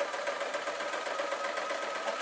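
Singer domestic electric sewing machine running steadily, stitching through cotton fabric on a long stitch setting.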